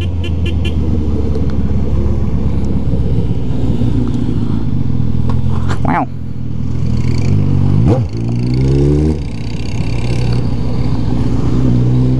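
Motorcycle engine running through an exhaust with the silencer taken off, leaving only the pipe, pulling through traffic: its pitch climbs under throttle, with brief drops at gear changes about six and eight seconds in and a further climb near the end.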